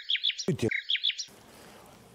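Bird-tweet sound effect laid over muted speech as a censor bleep: two quick runs of about four sharp, down-sweeping chirps each, ending about a second and a half in.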